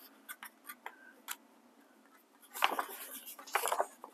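Faint clicks, then a stretch of soft crackling rustle, as a paper sticker is peeled from its backing sheet and pressed onto a planner page.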